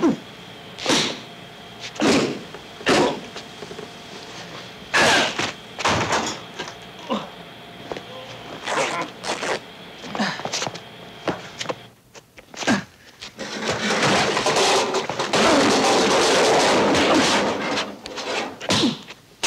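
Foley fight effects performed live: a run of sharp punch and body-blow impacts about one a second, then a few seconds of dense, continuous crashing and clatter near the end.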